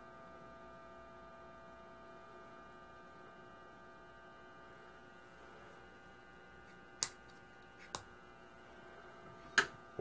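Steady low electrical mains hum from an energized isolation transformer and Variac, with the record-changer motor not running. Three short sharp clicks come near the end as the plug and test leads are handled.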